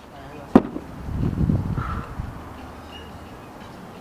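A single sharp knock about half a second in, then a low rumbling noise for about a second.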